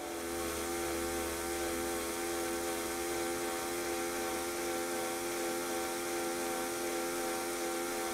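Small Bosch electric drill motor running at a steady speed with an even whine, turning over a model Tangye steam engine by its crankshaft. There are no knocks: the engine turns smoothly with no tight spots.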